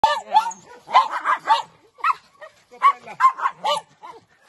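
A group of small dogs barking and yipping excitedly at a wire fence, with about nine short, high-pitched barks in quick, uneven succession.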